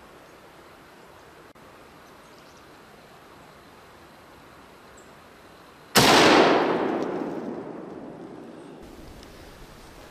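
A Karabiner 98k bolt-action rifle in 8x57mm Mauser fires a single shot about six seconds in. The report is loud and echoes away over about three seconds. Before it there is only a faint outdoor hush.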